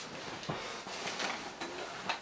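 Faint rustling and handling noise from a person shifting position, with a soft knock about half a second in.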